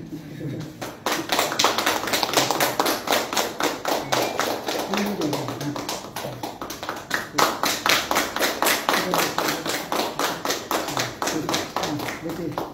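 A group of people clapping steadily and evenly, about five claps a second, with voices underneath. The clapping starts about a second in and runs until near the end.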